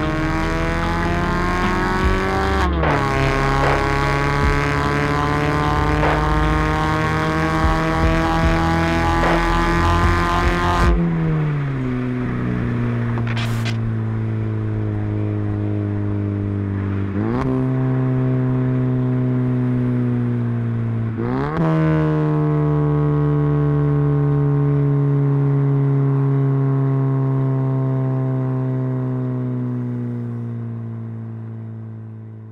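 Mazda 3 hatchback's engine and exhaust running under steady throttle. The note climbs slowly and drops sharply at gear changes about 3 and 11 seconds in, then gives short dips and rises about 17 and 21 seconds in.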